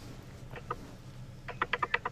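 Clicking at a computer while stepping through forecast map frames: a couple of faint clicks, then a quick run of about seven sharp clicks near the end.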